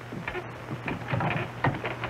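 Wooden knocks and scuffing footsteps as a man climbs down from a wooden landing into a boat, a handful of irregular thuds over a low steady hum.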